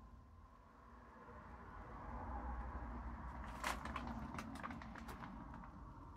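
Road traffic passing outside: a low rumble that swells to a peak two to three seconds in and slowly fades. A few light clicks and knocks come in the middle.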